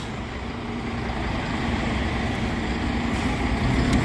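Street traffic on a wet road: a steady hiss with the low hum of a nearby bus engine, growing slightly louder.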